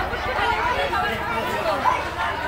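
Children chattering and calling out over one another, many high voices overlapping at once.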